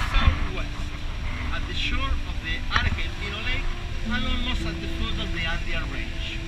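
Inside a moving coach bus: the steady low rumble of the engine and tyres on the road, with faint voices of passengers talking over it.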